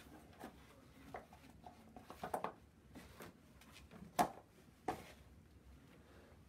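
Quiet handling sounds: a few light knocks and taps of objects being moved on a work surface, the sharpest about four seconds in.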